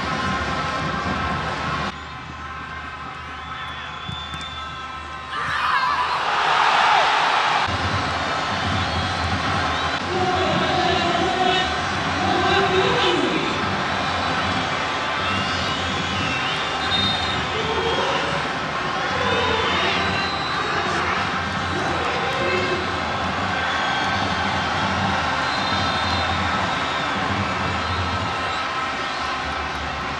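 Football stadium crowd: a steady drone of the crowd, with a sudden surge of cheering about five to seven seconds in, then individual shouts and calls over the drone.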